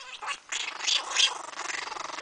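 Chihuahuas growling in a rough play fight, in short irregular bursts.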